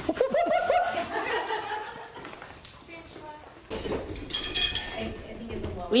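Indistinct voices and laughter of people in a large room while dogs play. A brief high-pitched sound comes a little past the middle.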